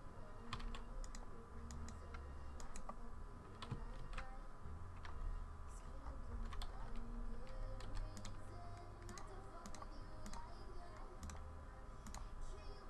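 Computer keyboard keys clicking in short irregular bursts, as used for software shortcuts, over a low steady hum.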